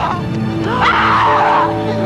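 Film soundtrack: sustained dramatic music with loud, harsh, wavering cries over it, one about halfway through and another beginning near the end.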